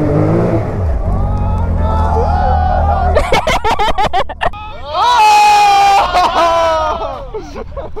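A Can-Am side-by-side's engine running with its revs falling early on, then settling to a steady low hum, heard from inside the open cab. From about three seconds in, people break into excited shouts and laughter, loudest about five seconds in.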